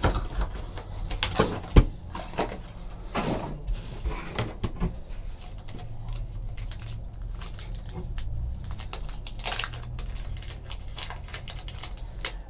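Hands handling a cardboard card box and a bundle of cards sealed in black plastic wrap: the wrap crinkles and rustles, with scattered small clicks and one sharper knock about two seconds in.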